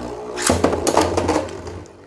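A Beyblade launcher is ripped, sending a metal spinning top into a plastic stadium where another top is already spinning. A sudden whir about half a second in is followed by a few sharp clicks as the tops land and knock, fading toward the end.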